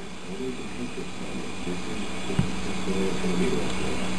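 A steady low hum over an even background noise, gradually getting louder, with a single click about two and a half seconds in.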